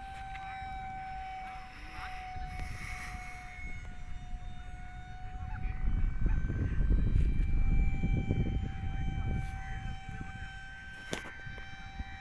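RC P-38 model plane's motors flying overhead: a steady high whine that sags slightly in pitch and then recovers. A low rumble of wind on the microphone swells in the middle.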